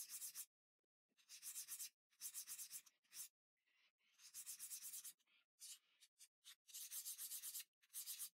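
Glass lens edge being ground by hand on a wet fine diamond hone: faint, rapid scraping strokes back and forth in short runs, with brief silent gaps between runs. The strokes are putting a bevel on the square edge of the lens.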